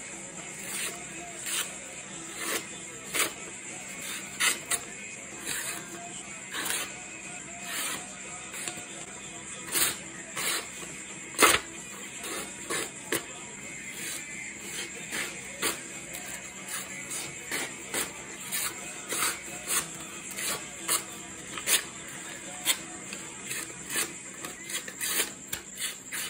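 The D2 steel blade of a Bestech Hornet folding knife slicing through a sheet of paper in a series of short cuts, about one or two a second. The edge, used for two weeks without sharpening, is "not terribly sharp, not terribly dull".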